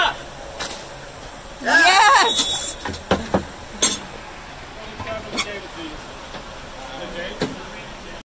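A loud shout from a spectator about two seconds in, over open-air rink noise, followed by a few sharp knocks of hockey sticks and ball on the rink.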